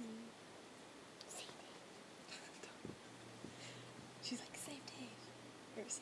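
Soft whispering in short breathy bursts, with a faint low hum starting about halfway.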